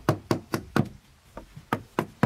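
Wood chisel being struck to chop into a wooden beam: about four quick blows at roughly four a second, a short pause, then two more.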